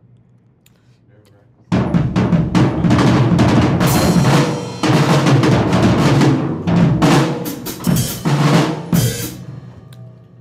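Drum kit played live in a dense, fast run of beats that starts about two seconds in, with a few short breaks, tailing off near the end.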